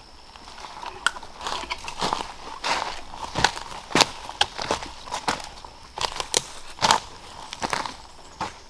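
Footsteps crunching and crackling through dry leaf litter and twigs on a forest floor, an irregular snap or crunch every half second or so.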